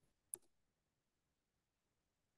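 A single sharp click of a computer keyboard key about a third of a second in, as a web search is entered; otherwise near silence.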